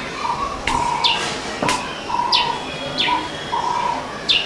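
A bird chirping over and over: quick falling chirps alternating with short, steady whistled notes. There is one sharp click about one and a half seconds in.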